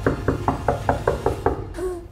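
Rapid, loud knocking on a wooden door, about five knocks a second, stopping about a second and a half in.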